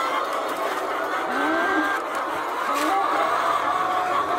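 A large flock of caged laying hens clucking and cackling in a continuous din, with a few single hens' calls standing out over it.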